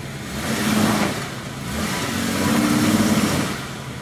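Jeep Wrangler's engine revving under load as it climbs a rutted clay hill. It swells about a second in and again for longer in the middle, rising a little in pitch, then eases off near the end.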